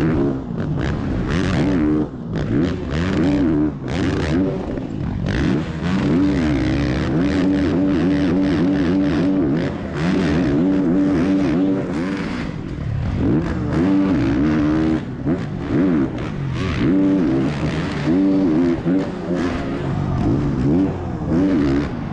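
Motocross bike engine heard close up from a camera on the bike, revving hard with the pitch climbing and dropping again and again as the throttle is opened and cut through gear changes and over jumps.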